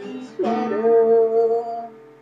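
Man singing with a strummed acoustic guitar. A new strum comes about half a second in, then one long sung note is held for over a second and fades near the end.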